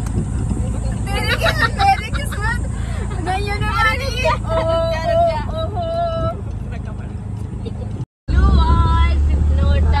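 An auto-rickshaw's engine runs steadily under young women's voices singing together. The sound drops out for an instant about eight seconds in, and the engine is louder after it.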